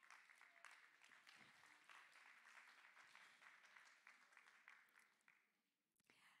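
Audience clapping, faint, dying away about five seconds in.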